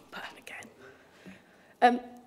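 A chamber microphone just switched on picks up faint murmuring and breathing, then a woman says "um" near the end.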